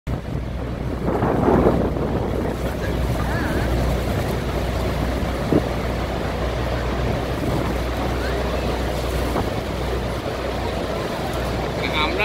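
Steady drone of a tour boat's engine under a wash of rushing water and wind on the microphone, with one brief knock about halfway through.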